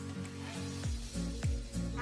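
Background music, with a steady bass drum beat coming in about a second in. Under it, a wire whisk scrapes and taps in a glass bowl as eggs and sugar are beaten.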